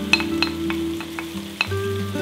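Finely chopped onion landing in hot oil around browned meat chunks in a pot and sizzling, with several sharp clinks of a spoon scraping the onion off a bowl.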